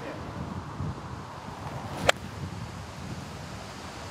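Golf club striking the ball out of the rough: one sharp crack about two seconds in, over steady wind noise on the microphone.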